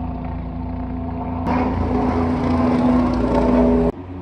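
A motor engine running close by at a steady pitch, growing louder about a second and a half in, then cutting off suddenly near the end.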